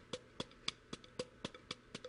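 Wooden drumsticks striking a practice pad in a steady, even rhythm of about four strokes a second, played as a looping stick-toss pattern.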